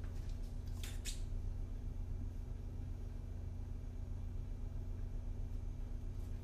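Two short scratches of a marker on a whiteboard about a second in, over a steady low room hum.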